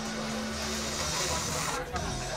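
A person snorting a line of powder through a rolled banknote: one long hissing sniff starting about half a second in and lasting just over a second, over background voices.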